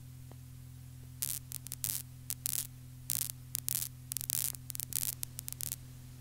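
Cassette tape playback noise at the start of the tape, before any music: a steady low hum with many short, irregular bursts of crackling static from about a second in until near the end.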